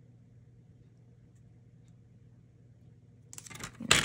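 Faint low room hum, then near the end a quick cluster of clicks and knocks from a paper trimmer being handled as card stock is set in place and the clear cutting rail is pressed down, the loudest click just before the end.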